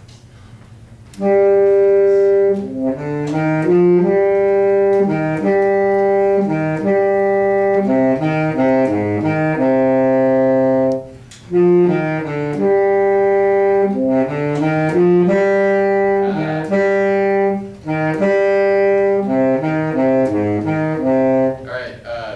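Small wind ensemble, saxophone among them, playing a reading exercise in sustained, slurred notes and chords. It starts about a second in, breaks off briefly about halfway, and goes on again.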